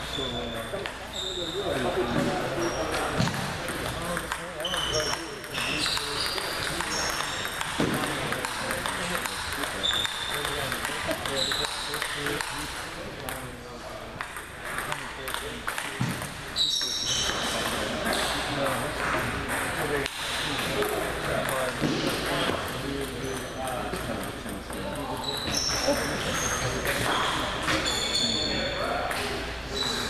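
Table tennis balls pinging off paddles and tabletops in rallies, short sharp hits coming irregularly throughout.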